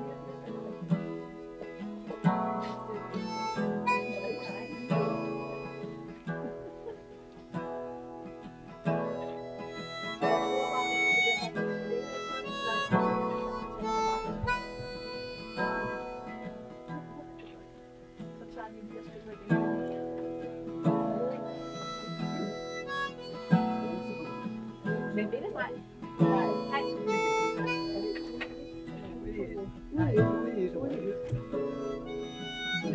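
A harmonica and a strummed acoustic guitar play an instrumental passage together, with held harmonica notes over the guitar chords.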